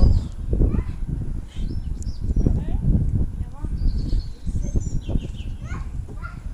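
Irregular low rumble of handling and wind noise on a camera microphone as the handheld stabiliser rig is shaken. Birds chirp and children's voices come through over it.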